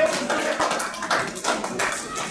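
Hand claps, a handful of sharp claps at an uneven pace, with faint shouting voices behind them.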